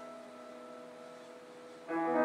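Electronic keyboard accompaniment in a pause between spoken lines: a held note fades away, then a new sustained chord comes in sharply near the end.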